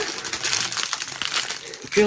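Small plastic bags of diamond-painting drills crinkling and rustling in the hand as they are handled, an irregular run of crackles.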